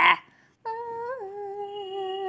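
A female voice humming one long, held note. A little after it starts, it drops a step lower in pitch.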